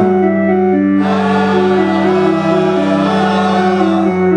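Loud live music through stacked amplifiers: a held low note that changes pitch near the end, shorter notes stepping above it, and a voice singing into a microphone that comes in about a second in.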